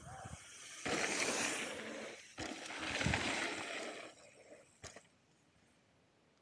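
Rolling noise of a mountain bike's tyres on a dusty dirt trail, mixed with wind rush, in two stretches of one to two seconds with a brief break between them.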